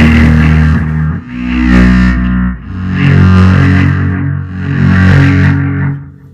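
A band playing loud distorted electric guitar chords over electric bass in three held phrases, stopping just before the end.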